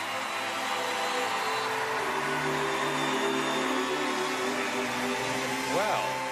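Studio audience cheering and applauding after a song, with held music chords underneath from about two seconds in.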